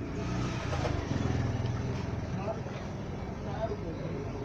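A steady low motor hum, with faint voices in the background.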